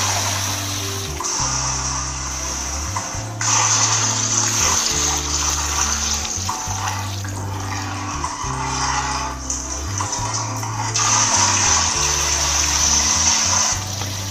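Water being poured into a large steel cooking pot and stirred with a metal ladle, over background music with a low bass line that steps from note to note.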